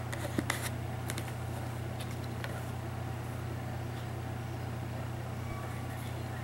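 A steady low background hum, with a few light clicks and rustles in the first few seconds as a leather knife sheath and its strap are handled.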